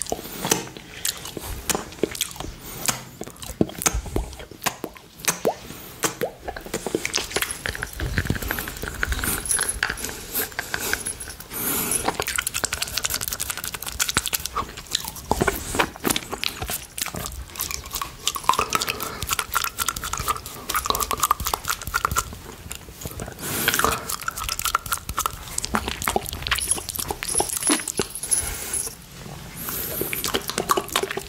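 Close-up wet mouth sounds from sucking and licking a hard candy cane: a dense, irregular run of clicks and smacks. A few drawn-out tones of a few seconds each come and go around the middle and later.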